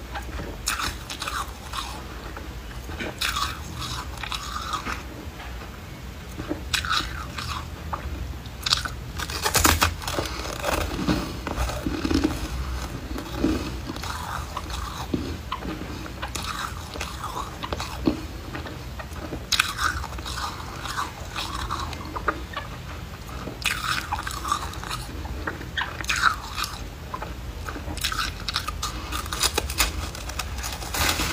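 Close-miked biting and chewing of a block of foam ice: crisp crunches come in irregular clusters, the loudest about ten seconds in.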